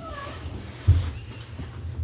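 Wool blankets being handled, with a low thump about a second in as they are set down. A short gliding meow-like call comes near the start.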